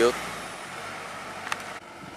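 Kubota DC108X rice combine harvester's 3.8-litre Kubota diesel engine running steadily as the machine moves into the paddy, an even machine noise with one sharp click about one and a half seconds in.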